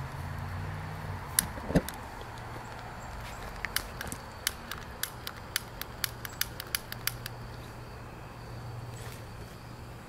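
Gas burner of a model steam boat's boiler being lit: a run of sharp, irregular clicks, about two a second, over a steady low hum. The clicks stop about seven seconds in.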